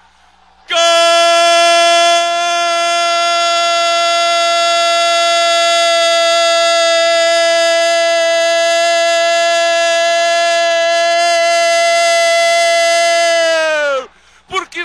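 A Brazilian radio football commentator's long goal cry: one "gooool" shout held on a single unbroken note for about thirteen seconds, its pitch sagging as his breath runs out at the end.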